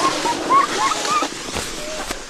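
Ice skate blades scraping and gliding over rough outdoor ice, a steady hiss, with a few short faint voice sounds in the first second.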